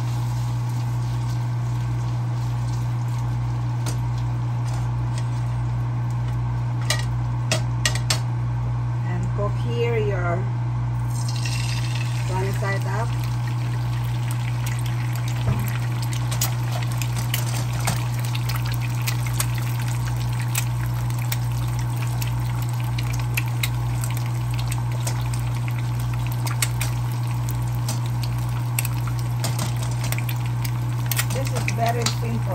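Cubed potatoes frying in butter and olive oil in a nonstick pan, a steady sizzle with many small crackles and spits. A steady low hum runs underneath.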